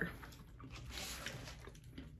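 Faint chewing and mouth sounds from people eating sandwiches, with a few soft clicks.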